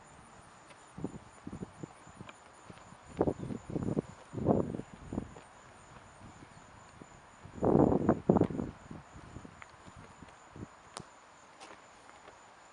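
Footsteps and camera-handling bumps in irregular clusters, loudest around eight seconds in, with a few sharp clicks near the end. Under them runs a steady high trill of insects such as crickets.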